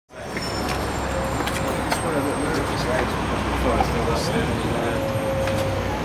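Outdoor street ambience: a steady low rumble of road traffic with faint voices in the background and scattered light clicks and knocks.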